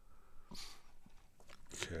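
A man's breath and small mouth clicks close to the microphone, then he starts speaking near the end.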